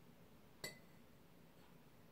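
Near silence broken once, about two-thirds of a second in, by a light clink of glassware that rings briefly.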